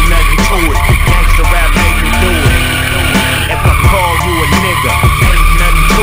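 Hip-hop music with a steady beat, mixed with the tyres of a Nissan Skyline R32 squealing as it drifts on concrete. The squeal shifts in pitch a little past the middle.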